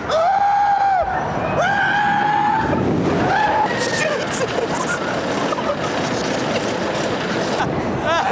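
Roller coaster riders screaming: about four long, held screams in the first four seconds, then a steady rushing noise from the moving ride.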